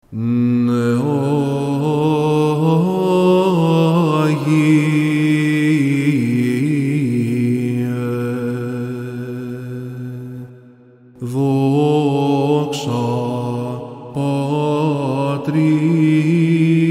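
Byzantine chant: a male chanter sings a drawn-out melismatic phrase over a steady held drone (ison). The singing breaks off briefly about ten and a half seconds in, then resumes.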